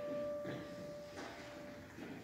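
A single steady, clear note held for nearly two seconds, sounded to give an unaccompanied choir its starting pitch.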